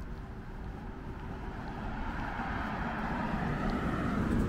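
A passing motor vehicle on the road, a steady rush of engine and tyre noise that grows louder over the second half.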